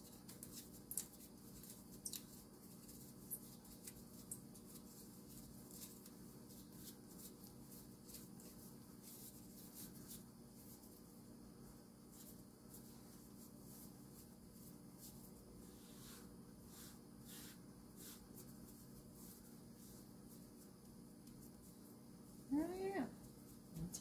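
Near silence: a faint steady room hum with scattered soft clicks and rustles of hands shaping sourdough into balls.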